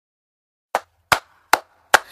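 Silence between songs, then four sharp percussion clicks evenly spaced at about two and a half a second: a count-in leading into the next DJ track.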